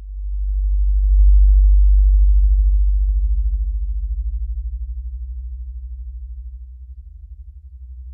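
Very deep electronic synth bass drone with a fast throbbing pulse. It starts, swells over the first second, then slowly fades.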